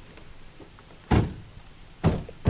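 A car door shutting once, about a second in: a single sharp impact that dies away quickly.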